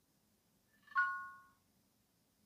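A short electronic alert chime from an Apple device about a second in, two tones sounding together and fading within about half a second, signalling that the Apple Watch has finished pairing and setting up.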